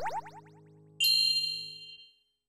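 Edited-in end-card sound effects. A quick rising swoop repeats as fast fading echoes, then about a second in a bright bell-like ding rings out and fades.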